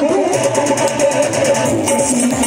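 Live instrumental folk music: a plucked-string melody with bending, gliding notes over a steady percussion beat.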